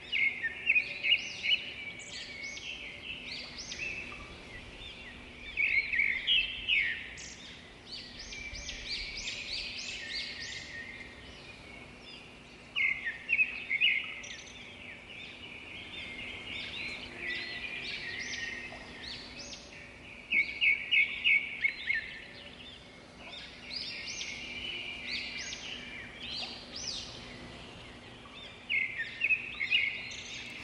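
Small birds chirping and twittering in bursts of quick, high calls, the loudest bursts coming about every seven seconds, over a faint steady low hum.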